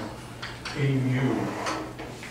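Chalk tapping and scratching on a blackboard as a formula is written, with a few sharp taps. A man's voice mutters briefly about a second in.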